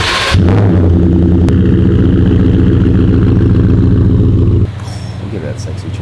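Ford F-150 pickup truck engine starting and then running with a steady low exhaust note. About four and a half seconds in, the sound drops suddenly to a quieter engine note.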